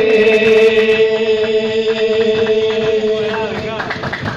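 Didong Gayo chanting: a voice holds one long, steady note that ends about three and a half seconds in, over a group's rhythmic hand-clapping.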